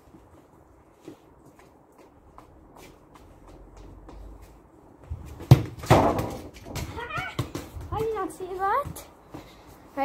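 A football struck hard with a sharp thud about halfway through, followed by further knocks as it reaches the goal. High, wavering cries follow a second or two later.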